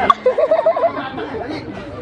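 Speech: a voice talking over crowd chatter, with a sharp click about a tenth of a second in.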